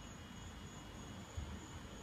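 Faint steady background noise: a low hum with a thin, steady high-pitched whine over it.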